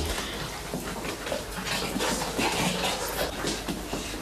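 Puppies at play, with brief dog vocalizations and scuffling on the floor.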